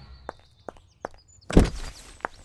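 Footsteps on a brick-paved driveway, a few light steps, then a louder thump about one and a half seconds in.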